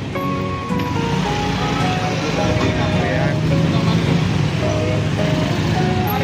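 Busy street crowd noise: people chattering and motorbikes running in slow traffic, with music playing throughout.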